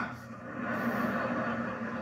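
Theatre audience laughing after a punchline, heard through a television's speaker.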